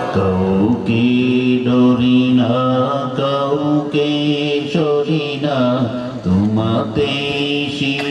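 A man chanting in the sung style of a Bengali waz sermon: long held notes that slide and waver in pitch, with short breaks between phrases.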